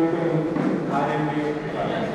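Speech: voices talking in a large room, no distinct non-speech sound.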